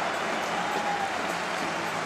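Stadium crowd of home fans cheering and clapping, a steady wash of noise.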